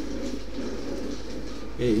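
A bird cooing softly over a steady low electrical hum, with a man saying a single word near the end.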